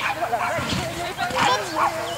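Border collie barking several times as it runs an agility course, with people's voices around it.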